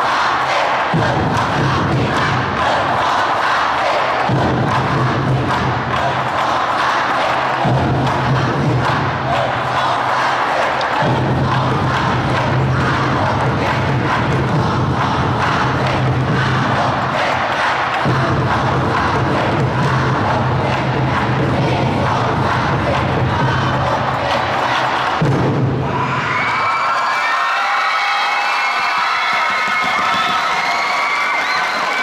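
A large stand-cheer section chanting and shouting in unison over a loud backing track, with a steady low hum in the music that breaks off and returns every few seconds. About 26 seconds in, the low end drops away and thinner, high melodic music comes in.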